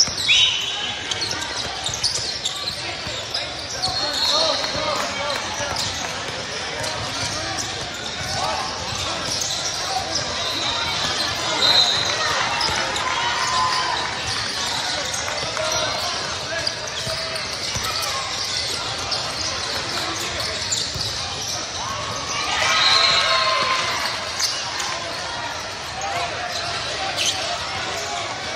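Live indoor basketball game in a large, echoing hall: a basketball bouncing on the court, short high shoe squeaks, and voices of players and spectators calling out, with one louder shout a little after the middle.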